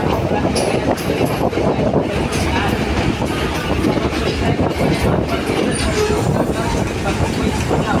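Diesel passenger train running along the rails, heard from aboard beside the carriage: a steady loud rumble of engine and wheels with irregular clicks and clacks from the track as it comes into the station.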